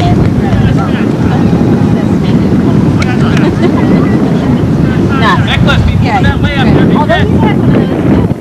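Wind buffeting a camcorder microphone, a loud, steady low rumble. Faint distant voices call out over it, busiest about five to seven seconds in.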